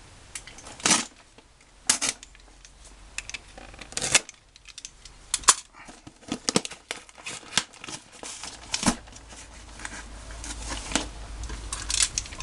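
Parcel wrapping being opened by hand: paper crinkling and tearing in an irregular run of sharp crackles and rustles.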